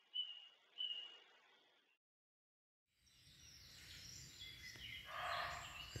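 A bird calling faintly: three short high notes in the first second. Then a sudden silence, and faint noise that swells near the end.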